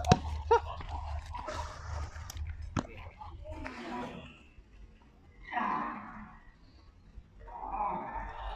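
Dobermann barking twice sharply near the start while lunging on its leash in bite training, followed later by rougher bursts of dog noise as it goes for the tug.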